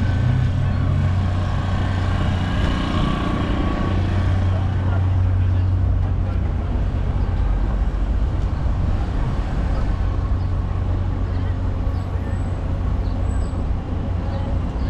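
Steady low rumble of city traffic, with indistinct voices of passers-by in the first few seconds and faint short chirps later on.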